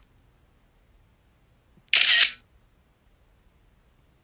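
Near silence, broken about two seconds in by one short, sharp burst of clicking noise lasting about half a second, with a click at its start and another a quarter second later.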